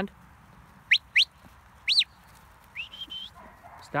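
Sharp whistled herding signals: two quick rising whistles about a second in, a rising-and-falling whistle at two seconds, then a rising note held briefly, typical of a handler whistling commands to a working sheepdog.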